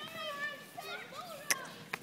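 A toddler babbling in short, high-pitched wordless sounds, with a sharp knock about one and a half seconds in and a softer one near the end.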